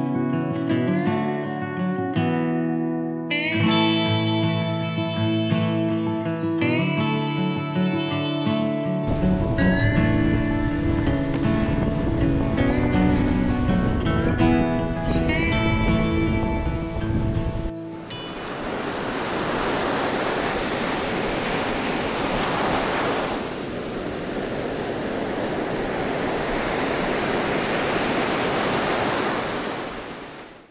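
Acoustic guitar background music, joined by a low bass line partway through, cuts off suddenly a little over halfway in. Steady ocean surf follows as waves break and wash up a sandy beach.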